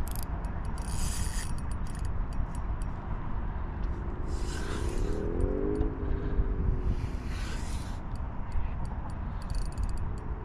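A spinning reel under heavy load from a hooked fish: scattered clicks of the front drag being adjusted and short bursts of reel and line noise as the line is wound and pulled, over a steady wind rumble on the microphone. A low wavering hum rises in pitch about halfway through.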